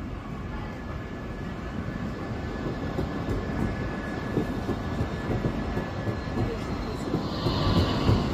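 City tram passing close by on street rails: a low rumble that grows louder as it nears, with a thin steady whine over it, and a brief higher-pitched sound near the end.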